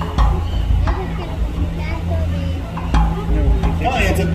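Indistinct voices of people talking, with background music underneath.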